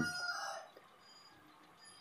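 The drawn-out end of a rooster's crow, fading out within the first second, followed by near silence.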